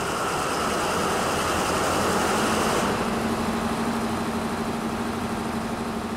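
Large generator set's engine running steadily, with a steady hum tone that sets in about two seconds in.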